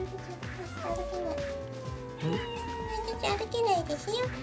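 Domestic cat meowing: one long, drawn-out meow that sinks slowly in pitch, then a few shorter meows near the end.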